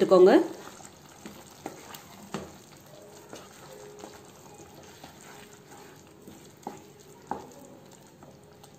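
Wooden spatula stirring mutton liver in a simmering masala gravy in a nonstick pan, with a faint sizzle and a few light knocks of the spatula against the pan.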